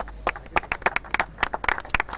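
A few people clapping by hand, a scattered run of separate, uneven claps.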